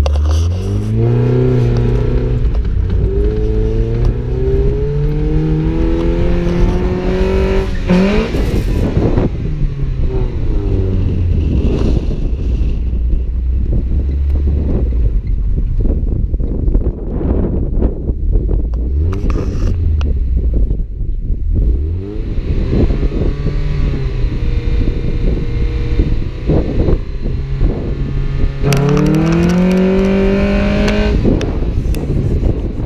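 Mazda Miata's four-cylinder engine being driven hard on a dirt road, its pitch climbing under acceleration for the first eight seconds or so, settling lower through the middle, then climbing again near the end. Wind buffets the microphone and the tyres hiss over loose dirt throughout.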